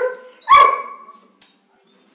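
A dog barking twice: a short bark right at the start, then a louder, longer bark about half a second later.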